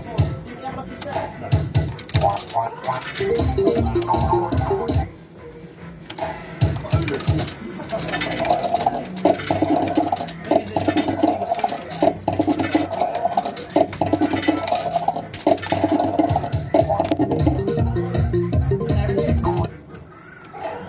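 Crazy Fruits fruit machine playing its electronic tunes and jingles in quick stepped notes with short clicks, with a brief lull about five seconds in. A win is being added to the credit.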